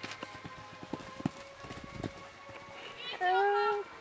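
Hoofbeats of a Trakehner horse cantering on an arena's sand footing: irregular dull thuds. Faint background music plays, and near the end a voice holds one loud note for under a second.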